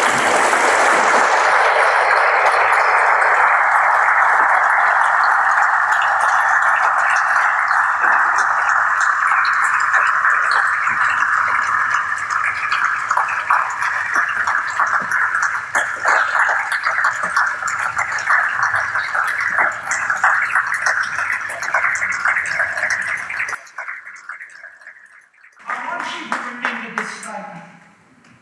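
An audience applauding, dense and steady at first, then thinning into scattered individual claps that die away near the end.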